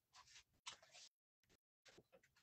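Near silence: faint room tone with one small click about two-thirds of a second in.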